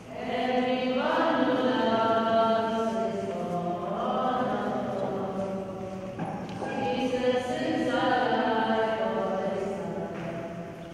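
Choir singing a slow communion hymn in long, held notes.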